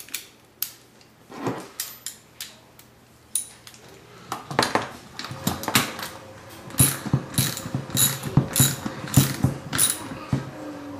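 Socket ratchet wrench clicking as it tightens the bolt through the dumbbell's shaft. A few scattered clicks come first, then steady ratcheting strokes from about halfway, roughly two a second.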